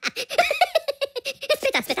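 A Minion's high-pitched giggle: a quick, even string of short laughs, about eight a second.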